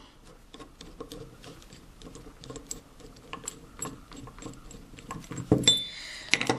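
Screwdriver backing out small bolts from a steel-channel bracket: a run of small metallic clicks and scrapes, with a louder metal clink near the end as the piece comes loose.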